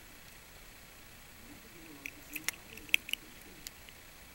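A few small, sharp clicks of a die-cast toy tractor's little parts being handled and pressed by fingers. The clicks come in a cluster starting about two seconds in.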